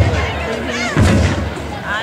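Marching bass drums booming, with one loud hit about a second in, among shouts and cheers from the crowd.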